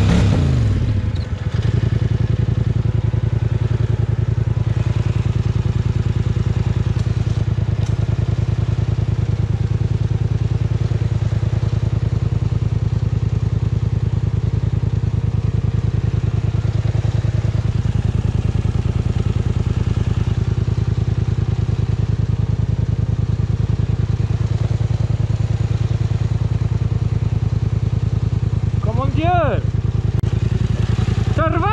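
Polaris Sportsman ATV engine revving, then settling about a second in to a steady idle while the quad sits stuck deep in mud. Near the end come a few short rising-and-falling whines.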